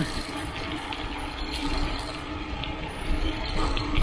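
Bicycle rolling along a paved road: steady tyre and road noise with wind rumbling on the microphone, and faint light ticking.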